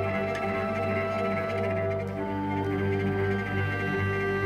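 Orchestral TV-series score music: slow, sustained held notes over a steady low bass, with a new pair of notes entering a little after two seconds in.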